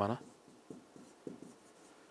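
A pen writing on a board: a few faint short strokes as numbers are written.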